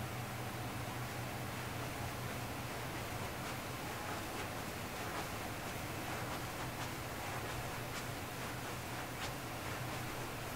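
Steady room-tone hiss with a faint low hum, broken by a few faint, short ticks.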